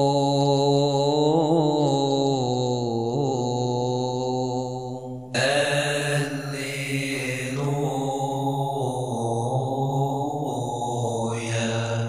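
A single voice chanting an Arabic psalm, holding long melismatic notes without clear words. Its pitch wavers slowly. After a brief dip, a new phrase starts sharply about five seconds in.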